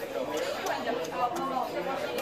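Chatter of diners talking at nearby tables in a restaurant dining room, with a couple of faint clicks.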